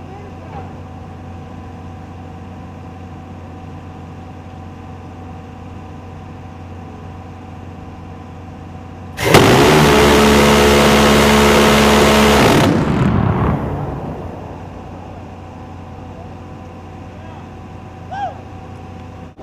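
The C-RAM's 20 mm six-barrel M61A1 Vulcan Gatling gun fires one continuous burst about nine seconds in, lasting about three and a half seconds, heard as a single sustained buzz rather than separate shots, then dies away in echo. Before the burst, a steady hum from the mount's machinery.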